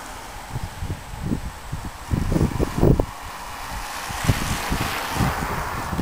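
Wind buffeting the microphone in irregular low gusts, loudest about two to three seconds in, over a faint steady outdoor hiss.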